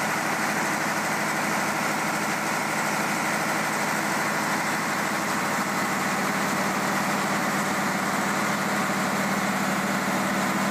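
Large Lister diesel generator engine running steadily at constant speed, a continuous hum with a strong low drone and no change in pitch.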